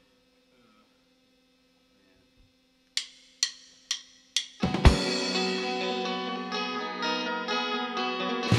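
Four drumstick clicks counting in the song, about two a second, after a few seconds of faint amplifier hum. Then the full band comes in together with a loud drum hit, electric guitar chords, bass and drum kit playing on.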